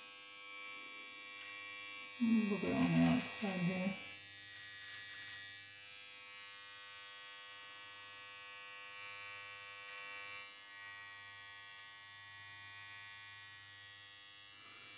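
Battery-powered Gillette Intimate body trimmer, made by Braun, running with a faint, steady electric hum as it trims beard hair on the chin. A brief vocal sound comes in about two seconds in and lasts under two seconds.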